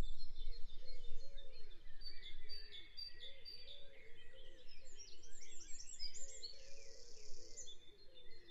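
A dawn chorus: many songbirds singing and chirping at once in a dense, overlapping tangle of high notes, with a repeated lower arching call running beneath.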